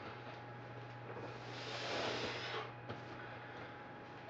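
A man breathing hard through a set of dumbbell curls: one long heavy breath swells and fades in the middle, over a steady low hum.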